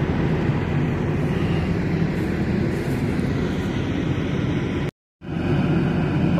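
Heavy diesel engine running steadily with a low, even rumble; it breaks off for a moment about five seconds in and then carries on.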